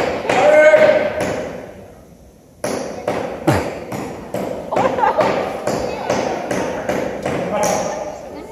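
A liquid-nitrogen-frozen banana used as a hammer, striking a nail into a board again and again, about three hard knocks a second after a short pause.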